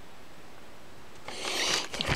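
Quiet room hiss, then near the end about half a second of rustling as a small paper note is handled.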